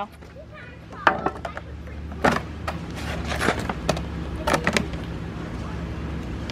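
Several sharp knocks and clanks about a second apart as old metal edging and loose brick are worked free, over a low rumble that slowly grows louder.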